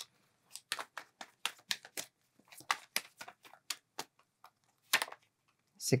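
Tarot cards being shuffled by hand: an irregular run of light clicks and snaps of card against card, about three or four a second, with a louder snap about five seconds in.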